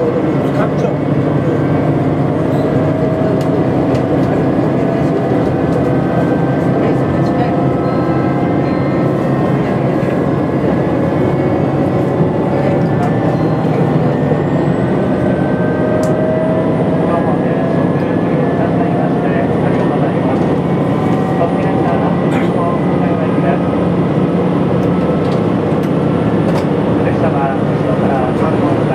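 Cabin sound of a JR Shikoku 2000 series diesel tilting train under way: a steady engine and running drone, with tones that rise slowly as the train gathers speed.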